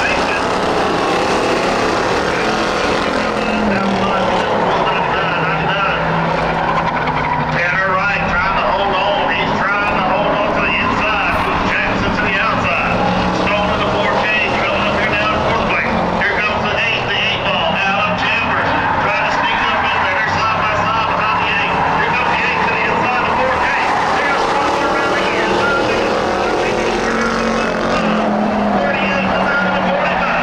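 A field of Ford Crown Victoria stock cars with 4.6-litre V8 engines running laps on a dirt oval. Their engine notes rise and fall in pitch as the pack goes around the track.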